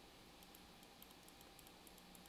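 Near silence: room tone with faint, light clicks scattered through it from computer input at the desk.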